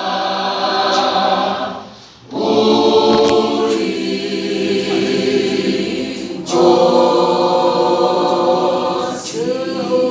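Mixed school choir singing a cappella in harmony, gospel-style, with a brief pause between phrases about two seconds in and a louder entry about six and a half seconds in.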